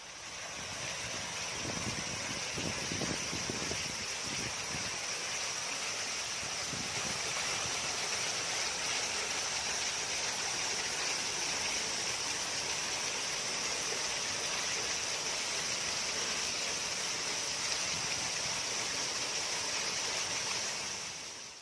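Artificial waterfall pouring and splashing over sculpted rock: a steady, hissing wash of falling water that fades in over the first second.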